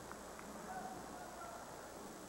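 Faint crowd murmur in a sports arena, with a few scattered distant calls from the spectators.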